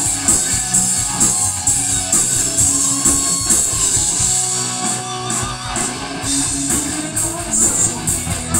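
Live rock band playing: electric guitars, bass guitar and a drum kit, with cymbal hits on a steady beat.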